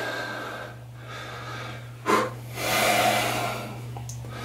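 A man breathing hard while holding a flexing pose: a short sharp breath about two seconds in, then a longer exhale, over a steady low hum.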